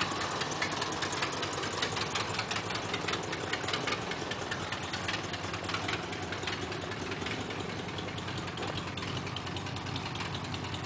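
A 1954 Mercury Monterey's V8 engine idling steadily with an even, rapid beat.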